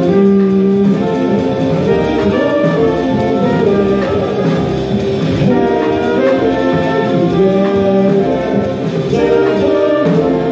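Live jazz horn section, trumpet and saxophone playing held notes together in harmony, with drums behind.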